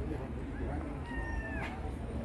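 A short, high-pitched cry about a second in, held for about half a second and dipping at its end, over murmuring voices and a steady low rumble.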